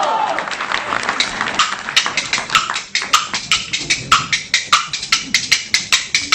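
Kuaibanshu bamboo clappers, a large two-piece clapper and a set of small clapper slats, starting the opening rhythm. A quick dense clatter gives way about two seconds in to sharp, evenly spaced clacks that speed up to about four or five a second.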